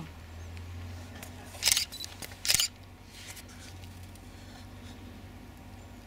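Two digital SLR camera shutter releases about a second apart, short sharp clicks over a low steady hum.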